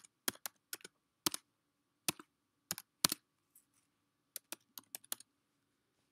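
Typing on a computer keyboard: separate clicking keystrokes in small irregular clusters, a pause of about a second past the middle, then a quick run of taps about four and a half seconds in.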